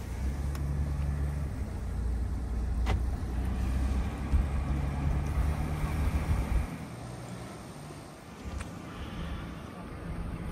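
Car engine and road noise heard from inside a moving vehicle, a low steady rumble. The rumble drops away sharply about two-thirds of the way through, leaving a fainter hum, and a single sharp click comes near the middle.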